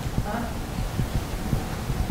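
A pause in speech filled with a low rumble and soft, irregular low thumps, with a brief faint murmur about a third of a second in.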